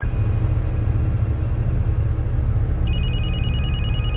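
A steady low rumble, and from about three seconds in a telephone ringing with a fast, trilling two-tone ring, just before the call is answered.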